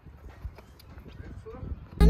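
Quiet, irregular thuds of a horse's hooves on grass, with a brief voice near the end.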